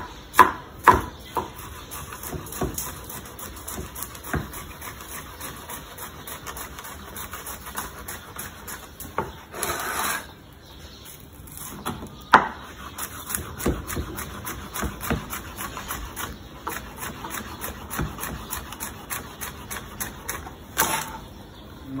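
Chef's knife slicing a yellow bell pepper on a plastic cutting board: irregular knocks and scrapes of the blade against the board.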